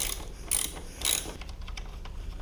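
Metal hand tools clicking at the 17 mm nut of a motorcycle's rear shock linkage bolt as it is worked loose, with three sharp metallic clicks about half a second apart.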